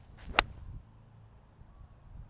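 A golf wedge swung at a ball off the fairway: a brief swish of the club, then a single sharp click as the clubface strikes the ball, a little under half a second in.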